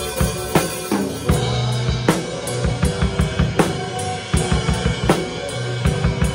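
Acoustic drum kit with Sabian AAX cymbals played live in a worship band: a steady groove of bass drum and snare strokes with cymbals, over sustained low bass notes from the band.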